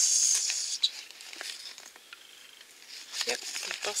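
Folded glossy paper leaflet rustling and crinkling as it is unfolded and handled: a burst of rustling in the first second, then softer handling noises and a few light clicks near the end.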